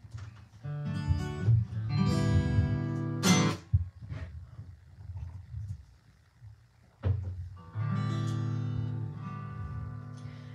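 Acoustic guitar strumming chords that ring out: a run of chords in the first few seconds ending in a sharp strum, a quiet pause, then one more strummed chord left to ring and fade.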